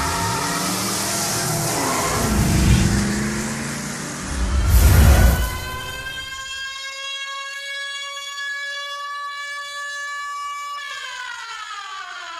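Intro sound design over a logo card: a dense rushing noise with a loud swell about five seconds in, then a held, siren-like electronic tone with a stack of overtones that rises slowly and drops in pitch near the end.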